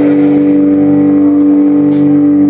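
Electric guitar through an amplifier sustaining one steady, loud note that drones on without change.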